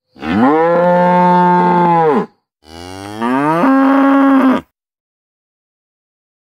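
A cow mooing twice, two long moos of about two seconds each. The first rises quickly in pitch, holds, then falls away at the end; the second starts with a long rising glide before levelling off and stopping abruptly.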